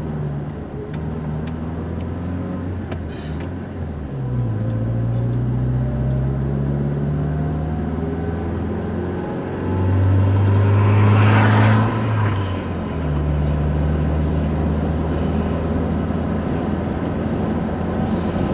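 Car engine and tyre noise heard from inside the cabin while driving at highway speed. The engine note drops about four seconds in, then climbs steadily as the car picks up speed. A louder rush of noise swells and fades between about ten and twelve seconds.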